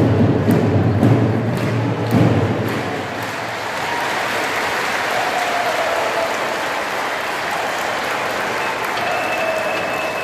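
Supporters' crowd applauding and chanting, with heavy low beats during the first two or three seconds that then stop, leaving steady clapping and cheering with voices singing above it.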